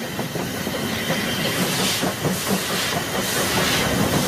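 Steam train running along the track: a steady rattle and rumble of wheels and carriages, with steam hissing that swells about halfway through and again near the end.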